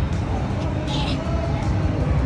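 Steady low rumbling and handling noise from a camera being carried through a play-area crawl tube, with faint voices in the background.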